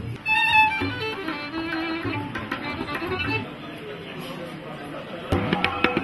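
Band warming up on stage during a soundcheck: short pitched violin phrases in the first half, then hand-drum strikes from near the end.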